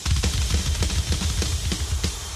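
A drum kit played fast and loud on stage, with rapid bass drum strokes under snare and cymbal hits. It breaks off with a final hit at the end.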